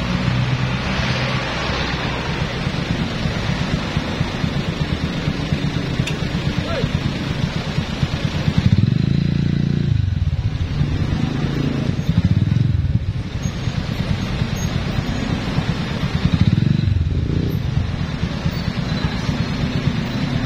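Motorcycle engine running at low speed in stop-and-go traffic, its low rumble swelling three times as the throttle is opened, about halfway, two-thirds and near the end.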